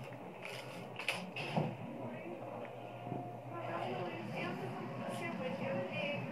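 Quiet, indistinct talking, with a few light clicks near the start.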